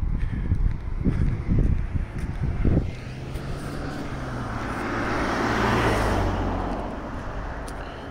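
Low rumbling bumps for the first few seconds, then a car passing by: road noise swells to a peak about six seconds in and fades away.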